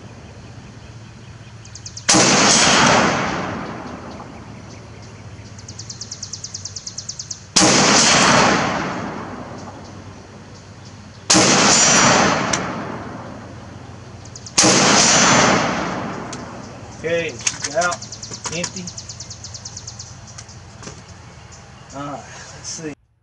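Four shots from a Beretta ARX 100 rifle in 5.56×45mm with a 10.5-inch barrel, fired a few seconds apart. Each sharp report trails off over about two seconds.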